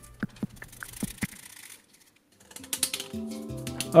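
Quick scraping strokes of a hand tool on the plastic duct of an EDF jet fan, sanding off the moulded lips that stop it fitting its mount. The strokes stop about a second and a half in, and background music comes in during the second half.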